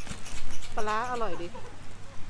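Speech: a woman says a short Thai phrase, "aroi di" ("delicious"), over a steady low hum.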